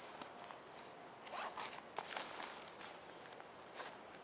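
Faint rasping and rustling of gear being handled, in a few short strokes between about one and three seconds in.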